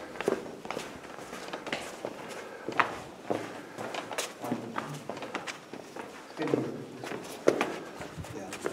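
Footsteps of people walking through a rock cave passage: irregular, uneven steps and scuffs.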